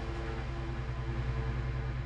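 Eurorack modular synthesizer holding a loud, low drone that pulses rapidly, with a few sustained higher synth tones above it; the percussion has dropped out.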